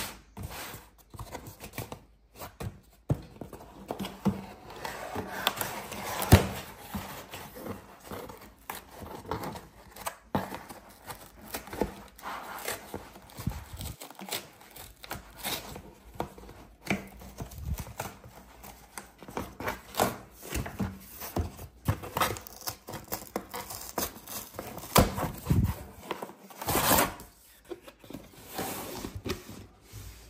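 Corrugated cardboard shipping box being torn open by hand: irregular ripping, rustling and tapping of cardboard, with short sharp knocks scattered through.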